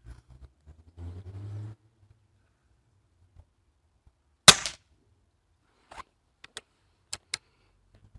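A single shot from an Air Arms S400 pre-charged pneumatic air rifle, a sharp crack with a short tail, about halfway through. A few sharp clicks follow over the next three seconds as the action is worked to reload.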